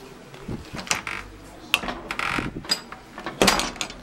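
Handling noise from a hand on the camera: a run of irregular knocks, clicks and rubbing, loudest near the end.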